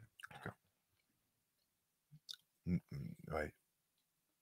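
Near silence broken by short voice sounds: a brief sound just after the start, then a man's murmured "mmh, mmh, oui" about three seconds in.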